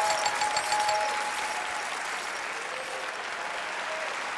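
Applause, a dense patter of many hands clapping, loudest in the first second and then holding steady somewhat lower.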